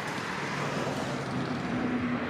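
Steady city street ambience: traffic noise with faint voices of people nearby.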